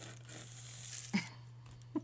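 Faint rasp of dried acrylic paint being peeled from a gel printing plate for about the first second, over a steady low electrical hum, with two short vocal sounds about a second in and near the end.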